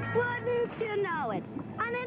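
A cartoon cat character's voiced meows and yowls: a few short high cries, then a long cry sliding down in pitch about a second in.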